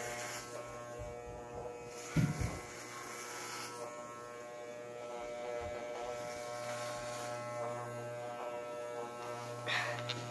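Corded electric hair clippers running with a steady buzz as they cut through a man's hair, with a brief low thump about two seconds in.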